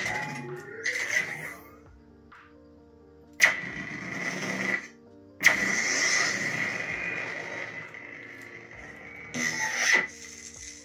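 Crystal Focus X (CFX) lightsaber soundboard playing a sound font through the hilt's speaker. There is a short sudden sound a few seconds in, then a sudden ignition about halfway that settles into a hum with a steady high tone and fades, and a retraction sound near the end.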